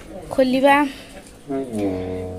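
A woman's voice briefly, then about one and a half seconds in a steady low droning tone with several overtones starts and holds.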